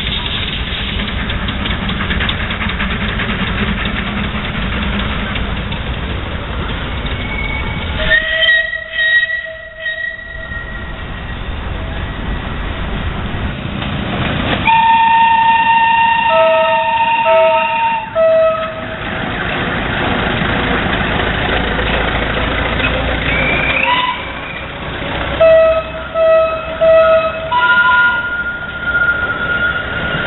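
Narrow-gauge park railway train running, with its locomotive whistle sounded again and again. There is one blast about a quarter of the way in, then a long blast followed by three short toots around the middle, and three more short toots later on.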